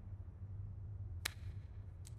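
Quiet, steady low hum with a single short click a little after halfway.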